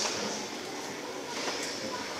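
Quiet room tone of a hall, with faint voices and a couple of soft knocks around the middle.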